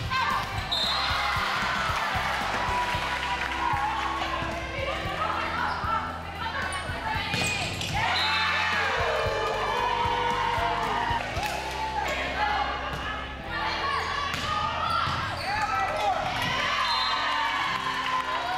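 Live volleyball play in a gymnasium: the ball struck a number of times, with players and spectators shouting and cheering throughout.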